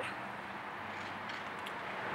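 Steady, quiet background noise with a faint low hum; no distinct sound event.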